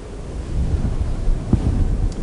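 Low rumbling with a few dull thumps on the microphone, the strongest about one and a half seconds in: handling or wind noise on the presenter's microphone.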